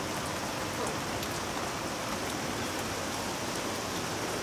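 A steady, even hiss with faint scattered ticks, of the kind that rain or a running fan or tap makes.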